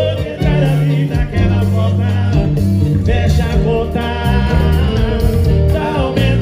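Live sertanejo band music played loudly through a PA: a male voice singing over heavy bass and percussion, with an accordion in the band.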